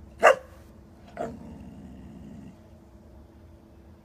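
Pit bull barking once, sharp and loud, then about a second later giving a softer second bark that trails off over about a second.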